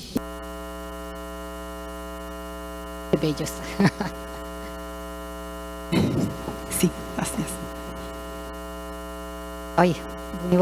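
Electrical mains hum in the sound system, a steady buzz with many overtones that switches on abruptly. A few short, indistinct bits of voice come over it about three and six seconds in.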